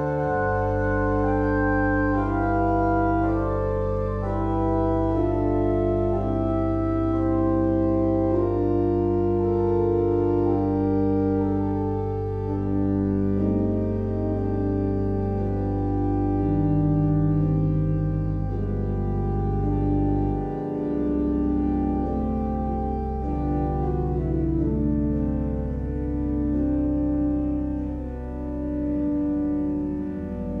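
Organ playing a slow piece of sustained chords over a held pedal bass note, which changes to a new bass note about two-thirds of the way through.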